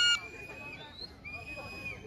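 Spectators at a volleyball match calling out between rallies: a loud high-pitched shout that cuts off just after the start, then two fainter thin, high held calls over low crowd noise.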